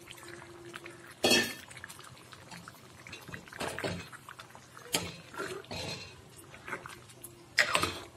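A metal ladle stirring thick vegetable curry in a pressure-cooker pot, with wet sloshing of the gravy and a few knocks and scrapes of the ladle against the pot. The loudest knocks come about a second in and near the end.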